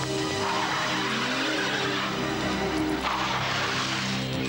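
A large saloon car pulling away fast, its engine and tyres making a dense rushing noise that swells again about three seconds in, with music underneath.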